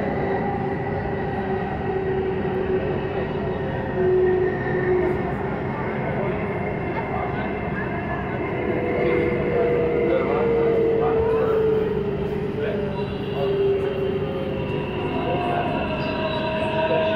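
Delhi Metro train running along an elevated track, heard from inside the coach: a steady rumble of the moving train, with steady tones that shift in pitch now and then.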